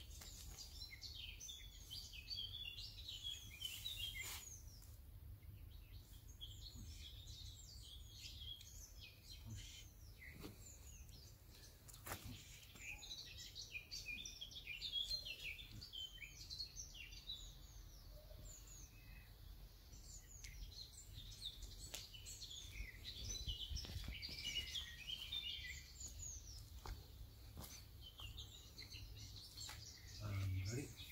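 Faint birdsong: several small birds chirping and twittering in quick short notes, with a steady low rumble underneath and a few faint clicks.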